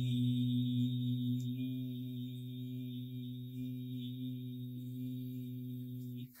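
A man's voice holding one long, steady 'eee' vowel at an even pitch, slowly getting quieter. It is the patient sustaining 'E' for the egophony test while his chest is auscultated.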